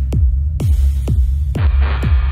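Minimal techno: a deep kick drum on every beat, about two a second, over a steady low bass. The higher sounds thin out, then a brighter synth swell comes in about one and a half seconds in.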